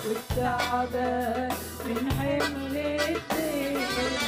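An Arabic worship song sung by women vocalists into microphones, over an instrumental backing with drums and held bass notes.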